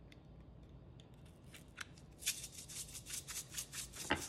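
A plastic seasoning shaker shaken hard over a mixing bowl, a fast run of small rattling ticks that starts about halfway in, after a couple of faint clicks. It is shaken a lot because the seal is stuck on and only a few small holes have been poked through the top.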